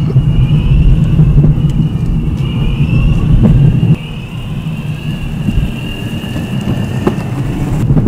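Motorized sofa on a Boosted electric-skateboard drive rolling over asphalt: a low wheel-and-road rumble with a steady high electric-motor whine. The rumble drops off about halfway through.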